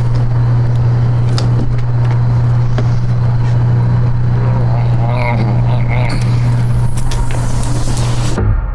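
A steady low hum that dominates throughout, with a few faint clicks and a brief faint voice about five seconds in.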